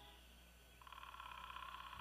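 Near silence as the music fades out, then a faint, high, rapidly pulsing trill begins about a second in, typical of wildlife ambience.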